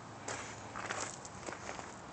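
Footsteps crunching on loose gravel, several uneven steps.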